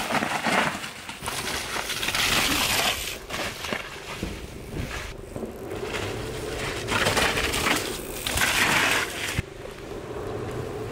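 Mountain bike tyres rolling and skidding through wet mud and over roots on a steep trail descent, in uneven surges of noise that peak about two seconds in and again near the end.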